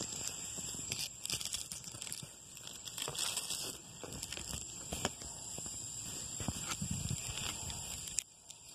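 Irregular rustling, scraping and tapping of a mesh produce bag and fingers handled right against the phone's microphone, over a steady high-pitched drone of cicadas in the night.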